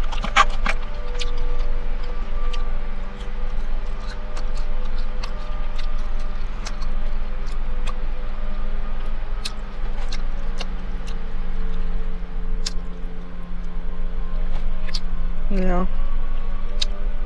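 Background music of long held notes, with scattered small clicks from chewing and handling food over it.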